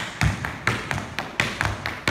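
Tap shoes striking the floor in a tap dance: a string of sharp taps in an uneven rhythm, about four a second, each with a low thud.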